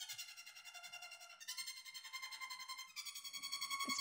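A strings track played back completely dry, with no reverb or delay: quiet, sustained high notes whose pitch changes about a second and a half in and again about three seconds in.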